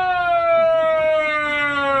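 A performer's voice holding one long, unbroken note that slides slowly down in pitch.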